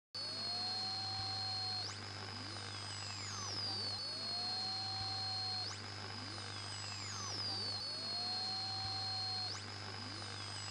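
Synthesized electronic tones in a repeating cycle of about four seconds: a low tone swells up and holds, while a high whistle jumps upward and glides slowly down, all over a steady low hum. It happens three times.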